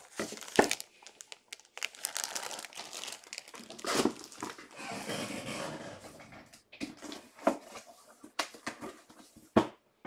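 Clear plastic bag around a jersey crinkling and rustling as it is handled and lifted away. Sharp knocks come between the rustling, the loudest about half a second in and just before the end.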